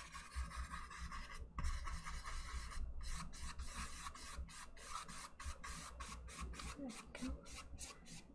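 Bristle paintbrush scrubbing oil paint onto a canvas: a dry, raspy scratching in short, repeated strokes that come quicker in the second half.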